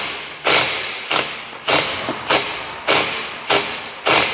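A steady run of sharp thuds, about one every 0.6 seconds, each ringing out briefly in an echoing space.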